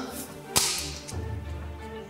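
A single sharp whip-like crack about half a second in, with a brief hiss trailing after it, over a low sustained music drone.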